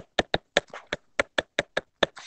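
Stylus tip tapping and clicking on a tablet's glass screen during handwriting: a quick, irregular run of sharp ticks, about five a second.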